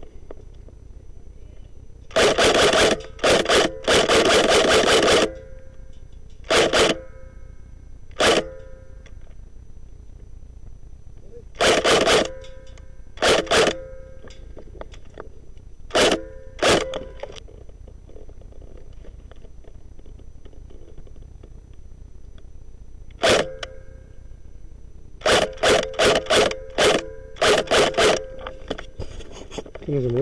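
Airsoft G36 electric rifle firing in short bursts and single shots, starting about two seconds in with pauses between, and a quick run of bursts near the end.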